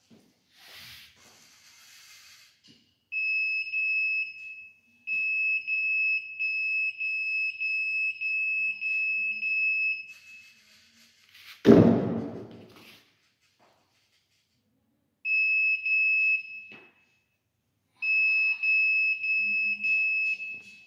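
Electronic buzzer on an Arduino-based intruder-detection prototype sounding a high, steady beep in four stretches of about one to five seconds. It is the alarm as the drone comes within range of the ultrasonic sensor and the laser fires. About halfway through there is a single loud thump.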